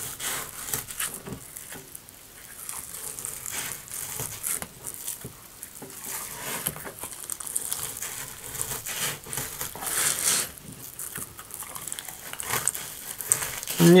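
A knife cutting a zander fillet away from its scaled skin on a wooden cutting board: irregular crackling, scraping strokes as the blade works along the skin.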